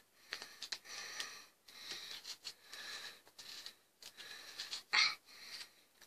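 Scissors cutting through the yarn wound on a pom-pom maker: a series of short snipping strokes, about one a second with brief pauses between. The loudest snip comes about five seconds in.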